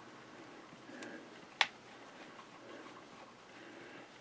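Two small clicks against a quiet room: a faint one about a second in and a sharper one about half a second later. They come from a hand working the Singer 237 sewing machine's freshly oiled bobbin winder.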